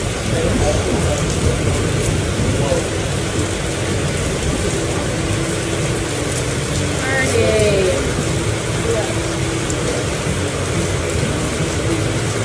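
Steady background hiss with faint, indistinct voices; a voice stands out briefly around the middle.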